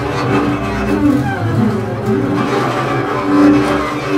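Two double basses bowed together in free improvisation: overlapping sustained low tones with sliding pitches and a rough, noisy edge that comes and goes, swelling in loudness about three and a half seconds in.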